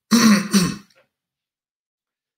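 A man clears his throat once, loudly and briefly, right at the start.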